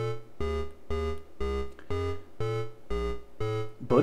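A DIY analogue modular synth playing a repeating sequence of about two notes a second. A dual VCO sounds a lower and a higher pitched oscillator together, and a vactrol low pass gate shapes each note. The gate takes off the fizz and top end, so the notes are more muted, with a slightly slower, less crisp attack.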